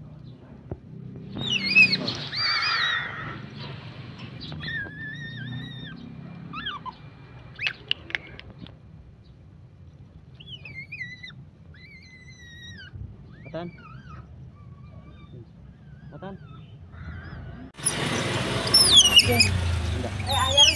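A baby otter giving high-pitched chirping squeaks, on and off, as it begs for pieces of raw fish held out to it, the noisy calling of a hungry otter. Near the end the calls turn suddenly much louder and almost continuous, a run of shrill squeals.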